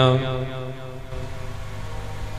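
A steady drone of several held musical tones under a spoken diwan, typical of a harmonium kept sounding between the preacher's phrases; it weakens about a second in and continues faintly.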